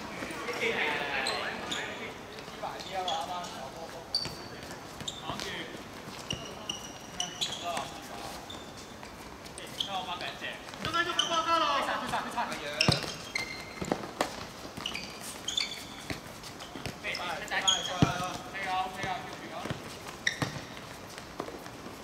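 Players calling out to each other during a seven-a-side football match, with the sharp thud of the ball being kicked a few times.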